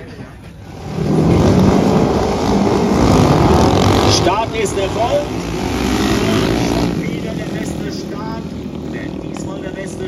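A pack of flat-track race motorcycles accelerating hard off the start line together. The sound comes in loud about a second in and eases after about seven seconds as the bikes pull away toward the turn.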